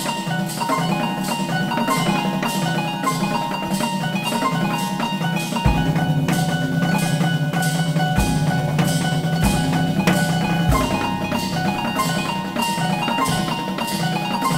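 Drum kit played with triggered pads that sound bell-like pitched notes stepping through the whole tone scale, over a steady pulse of cymbal strokes. About six seconds in a low note and occasional bass drum hits join.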